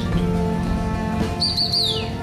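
Background music with an African grey parrot whistling over it: a short, high whistle starting past the middle that wavers briefly and then glides downward.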